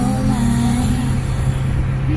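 A car driving along an open road, heard from inside the cabin: a steady low engine and tyre hum. A few held tones die away about a second in.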